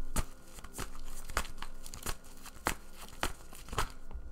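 Tarot cards being shuffled by hand: a run of irregular crisp card clicks and slaps, about two to three a second.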